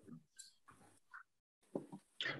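Near silence, broken by a few faint, brief soft sounds.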